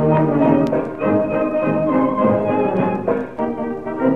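Small dance orchestra playing the instrumental introduction to a 1930 Danish revue song, with the narrow, thin sound of a recording of that era.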